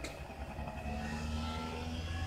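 A motor vehicle's engine running with a low rumble, growing slowly louder.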